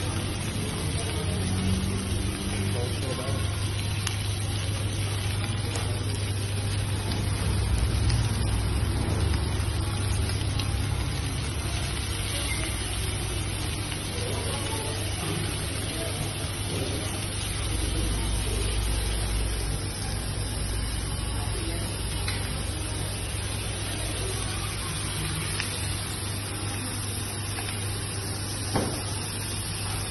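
Fish sizzling on a hot iron sizzler plate, over a steady low hum.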